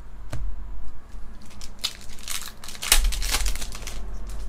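Foil booster-pack wrapper crinkling and tearing as it is ripped open, a cluster of crackles mostly in the second half.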